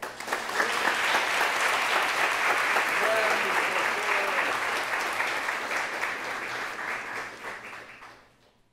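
Audience applauding steadily, the clapping dying away over the last couple of seconds.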